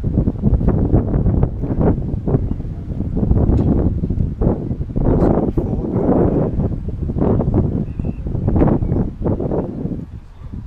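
Wind buffeting the microphone: an irregular, gusting rumble, loud and heavy in the low end.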